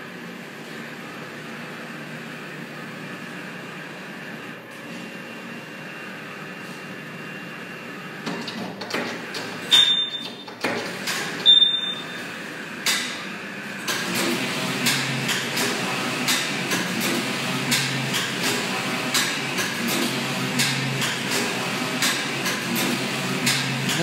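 Longxing computerized flat knitting machine starting up: a steady hum at first, a few sharp clicks and knocks from about eight seconds in, then from about fourteen seconds the carriage running across the needle beds with a continuous clatter of rapid ticks.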